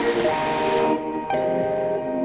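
Background music with held notes that change pitch every second or so; a hissing layer drops out about a second in.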